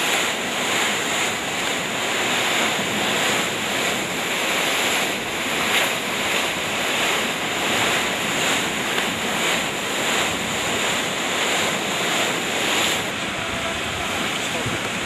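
Rough lake waves breaking and splashing against a concrete breakwall, a steady rush of surf swelling with each wave, with wind buffeting the microphone.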